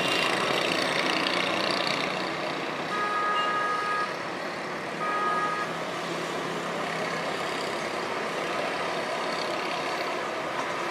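Steady road-traffic noise from a busy street, with a vehicle horn sounding twice: a honk of about a second some three seconds in, and a shorter one about two seconds later.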